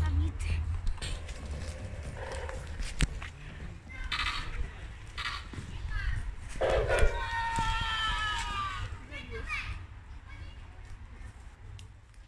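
Children's voices calling out in play, short and scattered, with a longer call about seven to nine seconds in, over a steady low rumble. A single sharp click comes about three seconds in.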